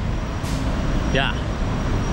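Steady rumble of passing road traffic, cars and trucks on a busy multi-lane city road, with a faint thin high tone through the second half.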